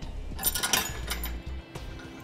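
Small steel mounting hardware clinking as a square block is fitted onto a hitch bolt inside a truck frame. A cluster of light metallic clicks comes about half a second to a second in.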